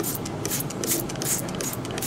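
A trigger spray bottle of stain remover squirted again and again onto a stained cloth bib, short squirts in quick succession.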